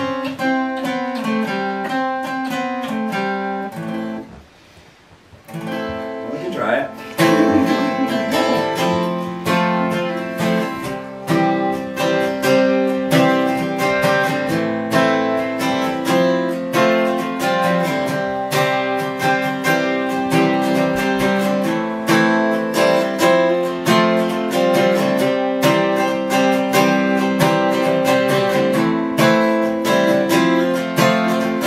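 Solo acoustic guitar: picked notes, a brief stop about four seconds in, then louder, fuller rhythmic strumming from about seven seconds on.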